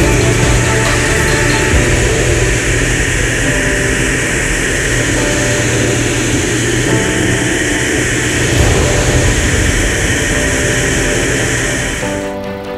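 A Van's RV-8's piston engine and propeller running steadily in cruise flight, under a loud, even rush of wind over the wing-mounted camera.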